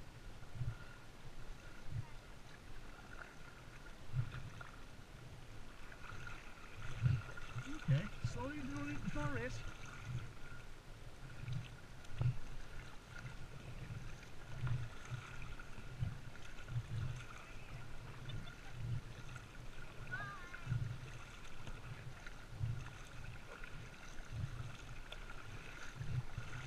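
Kayak paddle strokes and water lapping against the kayak's hull as it moves across calm water, giving soft low thumps about once a second.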